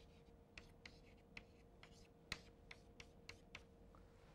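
Chalk writing on a blackboard: about ten faint, short taps and scrapes as symbols are written, the sharpest a little over two seconds in.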